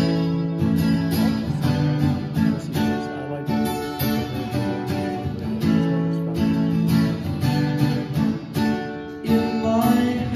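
Acoustic guitar strummed in a steady rhythm of chords, a song's opening played solo.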